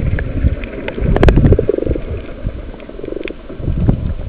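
Muffled underwater noise from a camera held below the sea surface: a dense low rumble of moving water with scattered sharp clicks and knocks, the loudest cluster about a second in.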